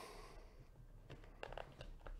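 Near silence, with a few faint clicks and taps in the second half from hands handling a small cardboard trading-card box.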